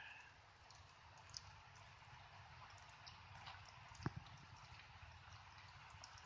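Near silence: a faint steady hiss of light rain with a few scattered soft ticks of drops, the sharpest about four seconds in.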